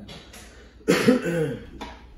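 A man coughs loudly once, about a second in, trailing into a short voiced sound.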